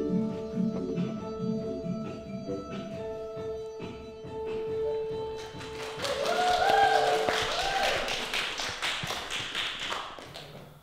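The song's instrumental accompaniment fades on a held chord. About halfway through, a small group starts clapping, with a brief whoop of a voice among the applause.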